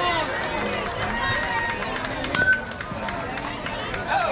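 Voices of spectators and players calling out, with a single sharp knock followed by a brief ringing tone about two and a half seconds in.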